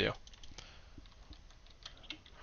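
A few faint, irregular clicks of a computer mouse.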